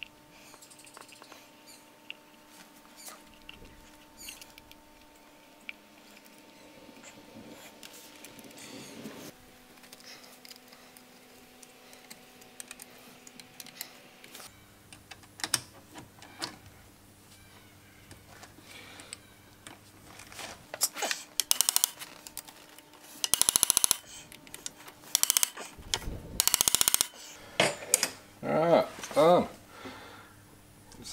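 Ratchet wrench clicking and metal clinks as the clutch is bolted back together on a motorcycle engine. Scattered light clicks at first, then louder bursts of rapid ratcheting in the second half.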